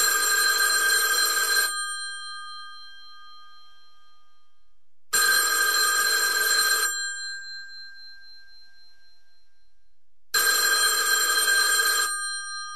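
Telephone ringing: three rings about five seconds apart, each lasting under two seconds and dying away.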